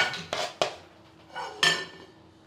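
Kitchen clatter from a ceramic plate being set down and handled on a countertop, with knife clicks: a few separate sharp clinks, the one about one and a half seconds in ringing briefly.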